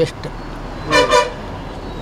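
A vehicle horn sounds two short toots in quick succession about a second in, over a low steady rumble.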